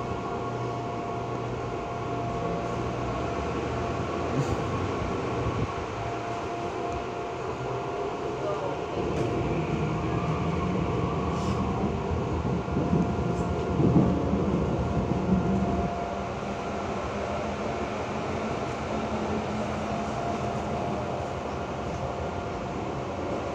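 Running noise inside a Seoul Subway Line 2 train: a steady rumble with a constant motor whine. About halfway through, an oncoming train passes close alongside and the noise swells for several seconds.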